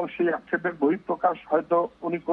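Only speech: a voice talking without pause.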